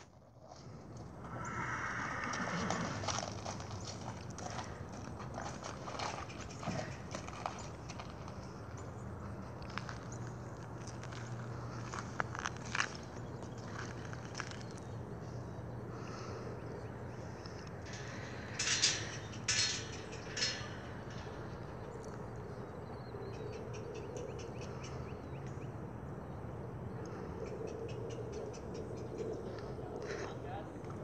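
Thoroughbred horse's hooves clopping and shuffling on gravel at the mouth of a horse trailer, with scattered knocks and a few louder strikes about nineteen to twenty seconds in.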